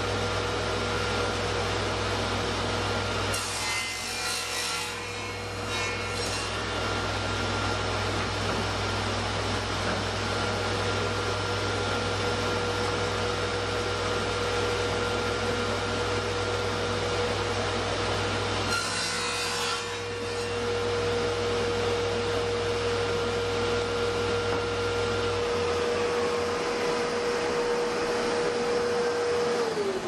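Table saw running with a steady whine and crosscutting plywood blanks on a crosscut sled: two cuts through the wood, a few seconds in and again about two-thirds of the way through. Near the end the saw is switched off and the whine falls as the blade spins down.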